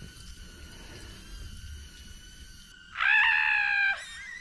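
A person's high-pitched scream, about a second long and wavering slightly, about three seconds in. It is the cry of someone tripping over a snow-buried fire pit and falling into the snow.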